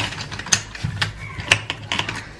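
Wooden pencils clicking and rattling against each other in a plastic pencil cup as they are sorted by hand: about half a dozen sharp, irregular clicks.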